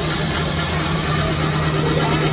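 Zamboni ice resurfacer running on the rink with a steady low hum.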